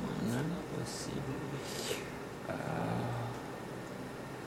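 Low, indistinct voices muttering, in two short stretches with a few hissed s-sounds between them; no sound from the projected video's singing is heard.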